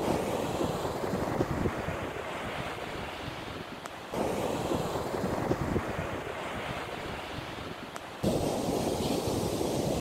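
Surf washing on a sandy beach, with wind buffeting the microphone in gusts. The sound swells and eases, and changes abruptly twice, about four and eight seconds in.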